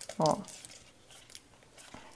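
Faint crinkling and light ticks of clear adhesive tape being handled and pressed onto a small plastic candle mould by hand.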